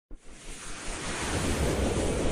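A rushing whoosh sound effect from an animated logo intro, swelling up out of silence over the first second or so.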